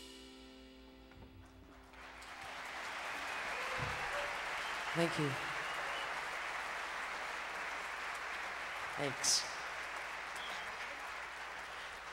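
A jazz band's final sustained chord dies away, then audience applause swells up about two seconds in and carries on steadily. A few brief voices sound over it.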